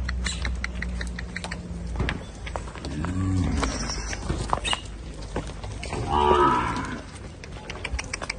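Gyr heifers mooing: a short, low moo about three seconds in, then a longer, louder one around six seconds. Scattered small clicks and knocks run throughout, with a low steady rumble in the first two seconds.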